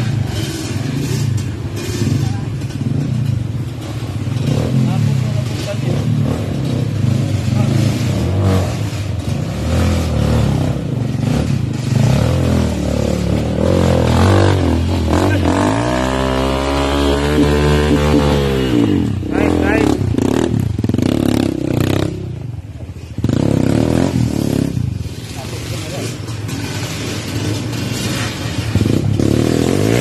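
Dirt bike engine running at varying revs, with one long rev that climbs and falls back about halfway through.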